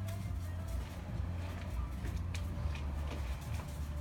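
Electric hair clippers buzzing steadily with a low hum as the barber cuts the boy's hair.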